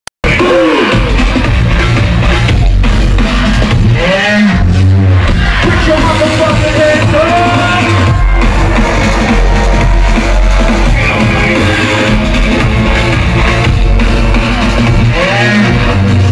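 Live hip-hop music played loud through a venue PA, heavy sub-bass under a rapper's voice on the microphone, recorded from within the crowd.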